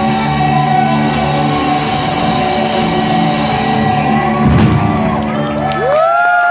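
Live rock band holding a sustained closing chord under a cymbal wash, with one hard drum hit about four and a half seconds in. Audience whoops rise just at the end as the song finishes.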